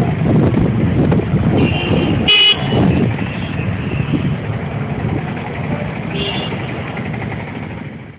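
Road traffic with a heavy low rumble. A vehicle horn honks briefly a little over two seconds in, with fainter toots just before it and again around six seconds.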